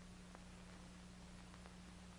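Near silence: the hiss and steady low hum of an old film soundtrack, with a few faint ticks.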